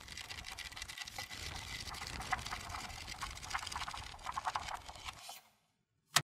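Pages of a hardcover book flipped rapidly by hand: a fast, fluttering run of papery clicks that stops abruptly about five seconds in.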